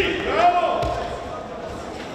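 A person's drawn-out call echoing in a large sports hall: the voice rises in pitch, then holds a steady note for about a second before trailing off.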